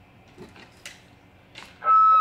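A few faint clicks, then near the end the CB radio's speaker suddenly opens loud with a steady beep-like tone as the test walkie-talkie keys up and its transmission is received.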